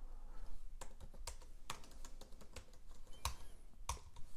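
Typing on a computer keyboard: about ten irregularly spaced keystrokes as short commands are entered at a terminal.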